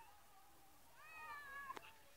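A child's high-pitched call, faint and distant, starting about a second in and held for most of a second with a slight fall in pitch, with a short click near its end.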